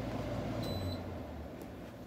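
Air conditioner being switched off: one short electronic beep about half a second in, then the unit's steady hum winds down and fades.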